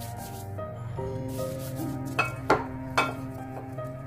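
Background music, with gloved hands working soft, sticky dough in a ceramic bowl. There are three sharp knocks against the bowl about two to three seconds in.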